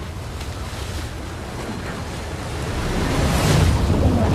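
Trailer sound design: a rumbling, windy swell of noise that builds steadily, loudest about three and a half seconds in.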